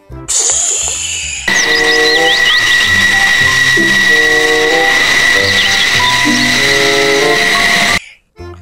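A short falling whoosh, then a fighter jet's engine running with a steady high-pitched whine and hiss, with music playing over it.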